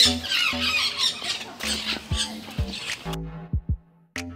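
Birds squawking and chattering in an aviary under background music with a steady beat. The bird sounds cut off abruptly about three seconds in, leaving the music.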